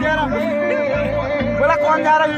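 A song playing, with a sung vocal melody over a repeating bass beat.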